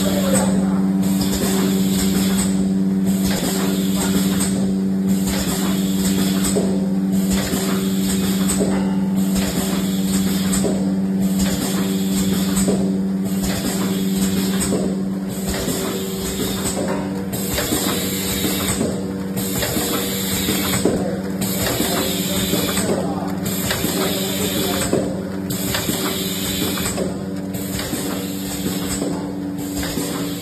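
Premade-pouch liquid filling and sealing machine running: a steady hum with a hiss that breaks off briefly about every two seconds, one break per machine cycle, and light mechanical clicks.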